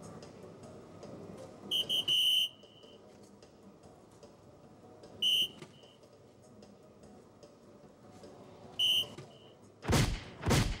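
Electronic soft-tip dartboard playing its high electronic hit beeps as three darts land in the 15, about three and a half seconds apart. The first dart sets off a quick run of three beeps, the last one held longer. The second and third each give a short beep, the third with a softer echo beep after it.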